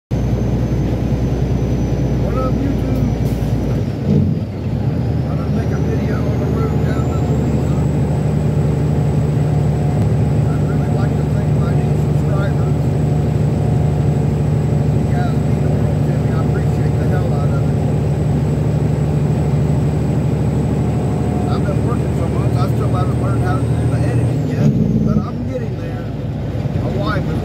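Truck's diesel engine running steadily under way, heard from inside the cab as a low, even drone. It dips briefly about four seconds in, after which a faint high whine climbs and holds, then drops away near the end.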